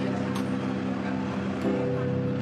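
Engine and road noise from inside a moving vehicle, with steady low musical tones underneath.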